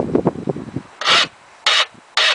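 Two short rasping strokes across the teeth of a flat metal file, about a second in and near the end, as chalk is rubbed into it to keep it from pinning.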